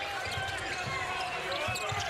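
Basketball dribbled on a hardwood court, with a few short thumps, over arena crowd noise and scattered voices.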